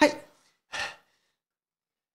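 A man's quick breath drawn in close to a handheld microphone, a short hiss about three-quarters of a second in, just after he breaks off mid-sentence.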